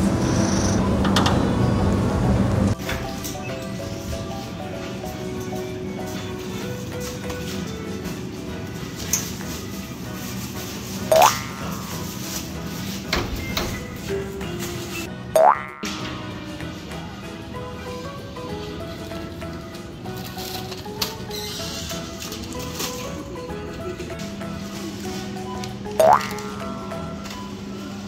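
Background music with held notes, broken three times by a short, loud rising swoop sound effect.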